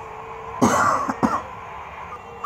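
A person coughing twice about half a second in: a longer cough, then a short one.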